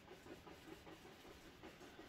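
Near silence, with a faint, quick, rhythmic scrubbing as a large dry bristle brush is swirled through oil paint on a canvas board.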